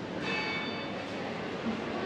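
A single high-pitched ring of a small bell or chime about a quarter second in, fading away within about half a second, over a steady murmur of people in a busy shopping arcade.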